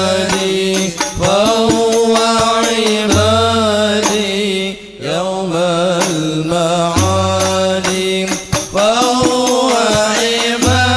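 Banjari-style sholawat: a melismatic Arabic vocal line with a wavering vibrato, sung over sustained low accompaniment with occasional drum strokes. It pauses briefly about halfway through.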